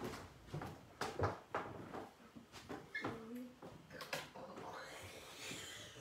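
Scattered light knocks and clicks of equipment being handled and turned round, in a small room.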